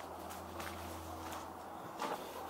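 Footsteps on gritty, debris-strewn concrete: a few faint irregular steps over a steady low hum.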